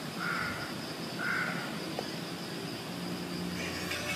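Two short bird calls about a second apart over a steady high-pitched insect drone, an ambience sound effect between songs; faint music starts to come in near the end.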